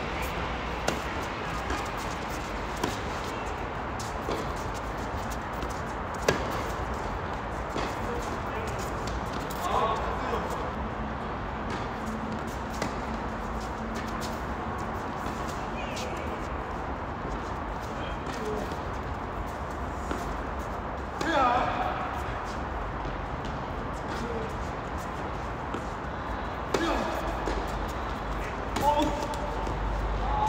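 Tennis balls struck with racquets in a doubles rally: sharp, separate pops of ball on strings, a second or two apart, mostly in the first part. Players' voices call out briefly a few times, strongest a little past the middle and near the end.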